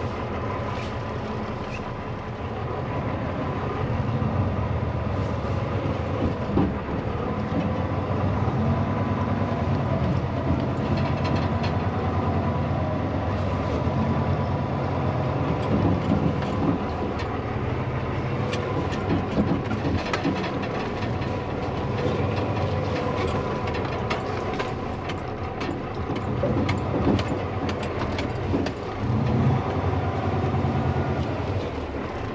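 Diesel semi-truck engine running at low speed, heard from inside the cab as a steady rumble, with scattered clicks and rattles from the cab, more of them in the second half.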